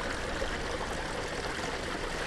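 Gray water from an RV's gray tank running steadily through the sewer hose into a portable sewer tote, its air vent opened so the flow keeps going.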